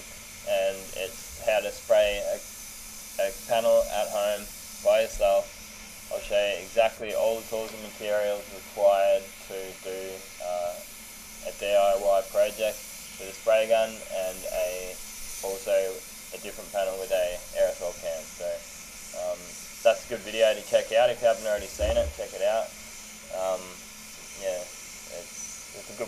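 A person talking steadily throughout, over a faint steady hiss.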